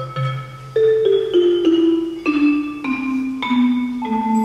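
Orff ensemble of mallet instruments playing: struck, ringing notes step downward one after another, over a low bass note that stops about a second in.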